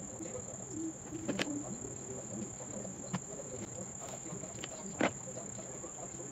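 Steady, high-pitched chirring of a cricket, with a faint click of handling about a second and a half in and a louder short knock about five seconds in.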